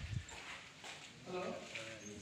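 Faint, indistinct voices of people in the background, with a low bump right at the start.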